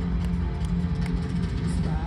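Live rock band playing over an arena PA, heard from far up in the stands: loud and bass-heavy, with a low note held through.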